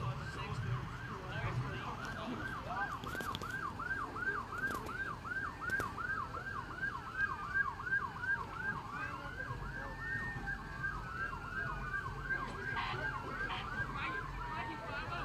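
Emergency vehicle siren in a fast yelp, rising and falling about three times a second. In the second half a second siren with a slower wail overlaps it. A few faint sharp cracks come in the first half.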